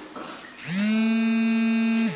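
A man's voice holding one long, steady, buzzy note. It rises briefly in pitch at the start and then holds for about a second and a half.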